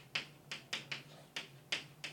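Chalk on a blackboard while writing: a quick series of sharp taps and clicks as each stroke starts, about three or four a second.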